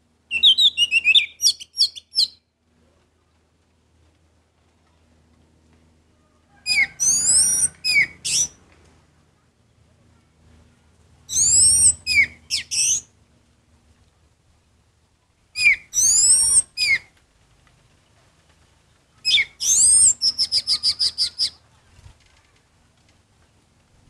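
Orange-headed thrush singing: five short phrases a few seconds apart, each made of quick sweeping whistled notes, the last ending in a rapid run of repeated notes.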